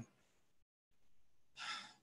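Near silence, then a short audible inhale from a man drawing breath just before he speaks, near the end.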